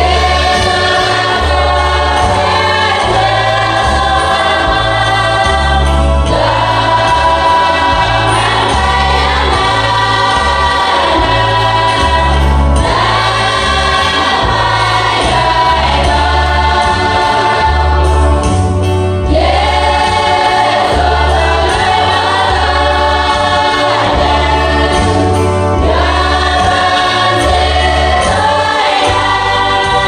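Women's church choir singing a hymn in unison and harmony, over a low bass accompaniment that moves from note to note.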